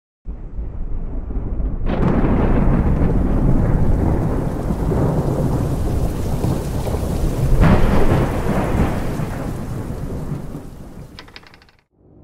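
Thunderstorm: rain with rolling thunder, a crack of thunder about two seconds in and a louder one near eight seconds, the rumble then fading away.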